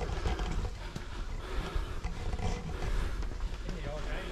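Indistinct voices over a low, steady rumble on the microphone, with scattered footsteps on a paved path.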